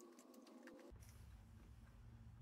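Near silence: room tone, with a few faint ticks in the first second.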